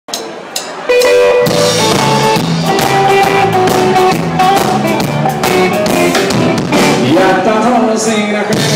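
A live band playing the opening of the song: after a thin first second, the full band comes in, with electric guitar melody over bass and a steady drum kit beat.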